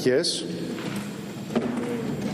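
A man's voice finishes a word at the podium microphone. Then comes a pause of about a second filled with a soft, even rushing noise, and a faint click about one and a half seconds in.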